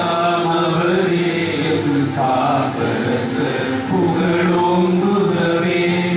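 A group of men singing a hymn together in unison, a slow melody of long held notes.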